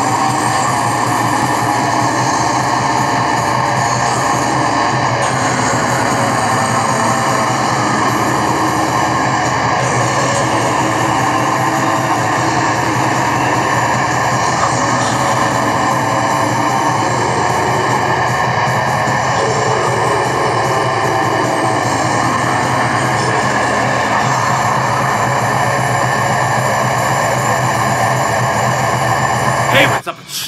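Distorted extreme metal music playing at a steady, high level: a dense, unbroken wall of heavy guitar.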